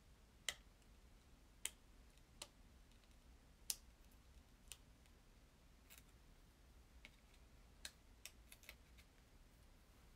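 Sharp light clicks and ticks of fingernails and small paper pieces being handled, about a dozen at irregular intervals over an otherwise near-silent room.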